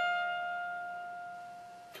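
Single electric guitar note on the high E string, hammered on to the fourteenth fret, ringing and slowly fading, then damped just before the end.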